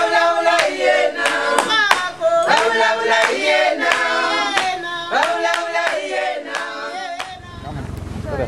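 A group of voices singing together, with steady hand clapping. The singing ends about seven seconds in, and a low rumble takes over.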